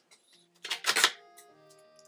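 Scissors being handled, a short rattling clatter lasting about half a second, about half a second in, over steady background music.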